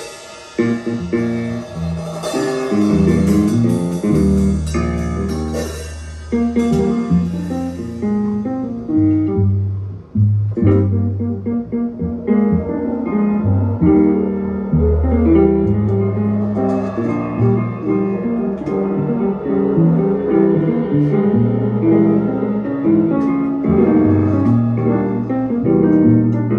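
Live free-jazz improvisation on piano, plucked bass and drums. Cymbals shimmer over the first several seconds, then thin out, leaving piano and deep bass notes moving underneath.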